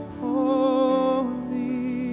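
Live worship band playing a slow, soft song: a singer holds one long note with vibrato for about a second, over sustained chords.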